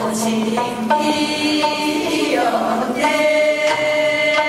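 Three women singing together in long held notes, accompanied by a plucked gayageum.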